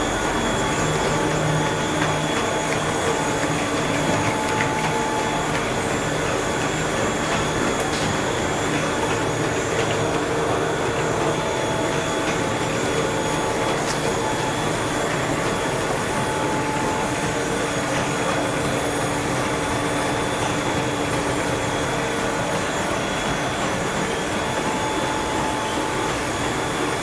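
Core-filled snack production line running: the extruder and the forming and cutting rollers make a steady, even mechanical running noise with a few faint steady tones, unchanging throughout.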